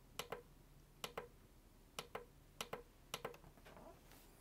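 Push button on a handheld hearing-loop field strength meter pressed about five times, each press a faint double click as it goes down and comes back up. The presses are scrolling the meter through its third-octave test frequencies.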